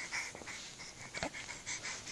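A baby breathing quickly and softly right at the microphone, with a couple of faint clicks about a second in.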